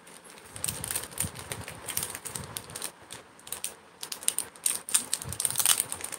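Rapid, irregular light clicks and clatter of small hard objects being handled, in uneven clusters that grow busier near the end.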